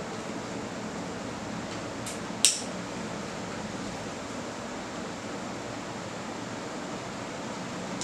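A sharp click about two and a half seconds in, just after a fainter one: the plastic leg lock of an aluminium camera tripod snapping shut. Under it, a steady background hiss.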